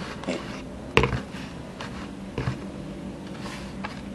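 Handling noise from a homemade portable speaker box being moved on a desk: a sharp knock about a second in and a few softer bumps, over a faint steady low hum.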